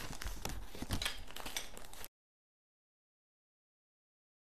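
Craft-kit parts, a blue plastic sweeper bar and a flat wooden wheel, being handled and fitted together on a table: light clicks and rustles. The sound cuts out completely about two seconds in.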